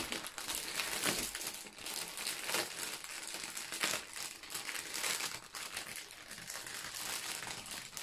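Plastic packaging crinkling as hands unroll and handle a strip of small resealable bags of diamond-painting drills in a clear plastic bag: continuous irregular crinkling and rustling.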